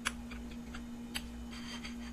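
A metal fork clicking against a ceramic plate as it cuts into a soft baked potato mash. There is a sharp click right at the start, another just over a second in, and a run of lighter clicks near the end.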